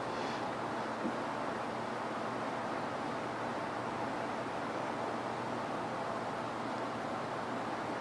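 Steady background noise: an even hiss with a faint low hum, and one small click about a second in.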